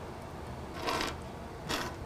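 Two short rustles, about a second apart, of materials being handled on a fly-tying bench while lead wire is searched for.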